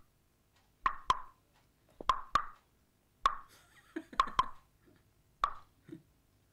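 Sharp, hollow plopping knocks, mostly in pairs, repeating about once a second in a steady rhythm from the film's soundtrack.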